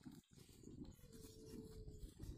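Near silence: faint outdoor background, with a faint thin steady tone in the second half.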